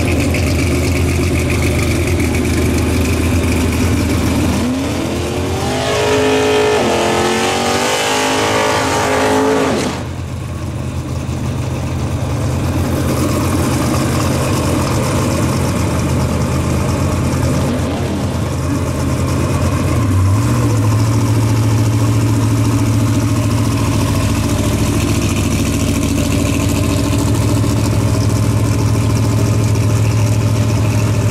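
Supercharged drag-car engine idling loudly. About five seconds in it revs up, with the pitch climbing and wavering, and the rev cuts off abruptly near ten seconds. Then it settles back to a steady idle, and the note changes to a different steady idle about two-thirds of the way through.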